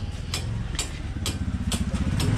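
Footsteps at a walking pace, about two a second, with a low engine hum underneath.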